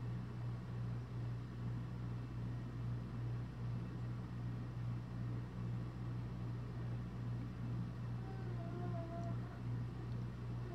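A steady low mechanical hum that swells and fades slightly about once or twice a second. Near the end a faint wavering pitched tone sounds briefly above it.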